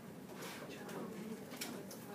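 Faint, distant voice from across a classroom, over quiet room tone: a student answering the teacher's question.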